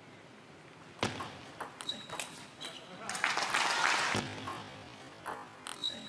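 Table tennis ball hit back and forth and bouncing on the table in a fast rally: sharp clicks, some with a short high ping, starting about a second in and coming in quick succession. A louder rush of noise lasts about a second around three seconds in, and more clicks of ball on table and racket come near the end.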